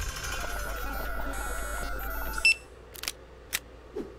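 Cartoon computer sound effect: a machine bleeping, with a steady tone under quick stepping electronic blips for about two and a half seconds, ending in a short ping. A few sharp key-like clicks follow.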